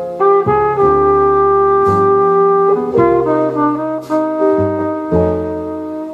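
Jazz ballad recording in an instrumental passage with no singing: a horn plays long, held melody notes over a bass line, the notes changing roughly once a second.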